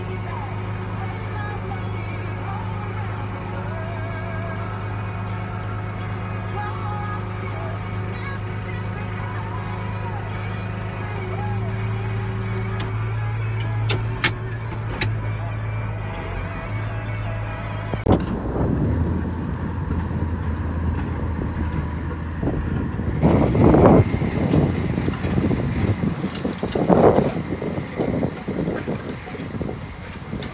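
Case IH Magnum tractor engine running at a steady drone inside the cab while pulling a disc. A little past halfway the sound switches to outdoors, with wind gusting on the microphone over the distant tractor and disc.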